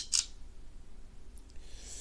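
Phone camera shutter sound: a sharp click and then a brief hiss right at the start, over a low steady hum.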